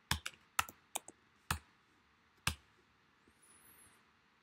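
Keystrokes on a computer keyboard: about eight sharp, irregular clicks in the first two and a half seconds, a quick cluster and then two single presses, as typed text is deleted.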